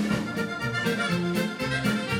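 Live liscio dance band playing, with accordion carrying the melody over a steady bass and drum beat.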